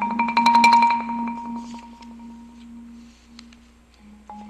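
Yamaha marimba played with four mallets: a rapidly rolled chord that swells and then fades away over about two seconds, with a single soft stroke a little after three seconds in.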